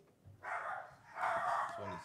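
Dogs barking in two short bursts, fairly faint.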